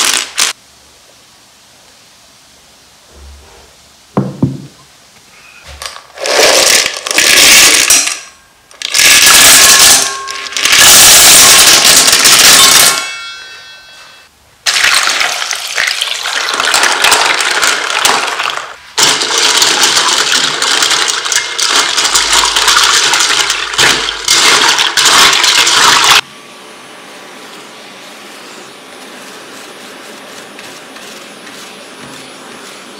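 A brief clatter of loose plastic keycaps at the very start. Later, warm water is poured from a plastic jug onto a heap of plastic keycaps in a stainless steel bowl: a loud rushing, splashing pour in two long stretches, cutting off suddenly near the end.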